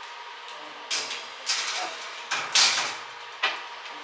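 A metal springform cake pan sliding onto a wire oven rack, making four or five short scraping rattles, the loudest about two and a half seconds in, over a steady hum.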